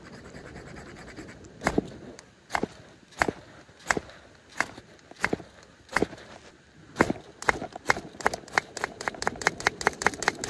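Ferro rod fire starter struck repeatedly with its scraper, each stroke a short sharp scrape throwing sparks onto hemp twine tinder that has not yet caught. About seven strokes come under a second apart, then from about seven seconds in they quicken to three or four a second.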